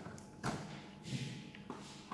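Handling noises from a plastic toy remote control and cardboard packaging: a knock about half a second in, a brief scrape, then a small click near the end.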